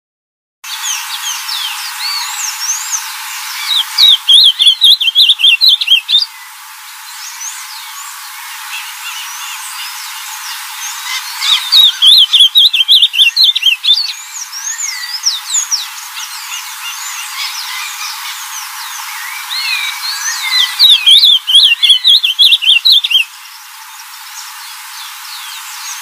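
Ultramarine grosbeak (azulão) singing: three loud phrases of rapid warbled notes, each about two seconds long and several seconds apart. Other birds chirp in the background throughout.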